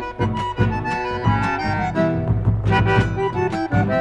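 Instrumental folk dance music from a small ensemble, an accordion leading the melody over a steady beat and bass.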